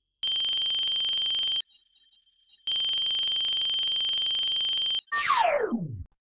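Electronic beep sound effect: a steady high tone held for about a second and a half, a pause of about a second, then the same tone held for over two seconds. Near the end a fast tone sweeps steeply down in pitch.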